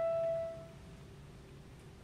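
A concert flute's held note fading away within the first second, then a pause in the solo with only faint room tone.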